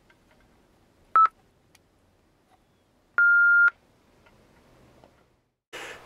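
Mobile ham radio transceiver beeping as keys are pressed on its MH-48 DTMF keypad microphone to enter an operating frequency: a short beep about a second in, then a longer beep of about half a second at about three seconds.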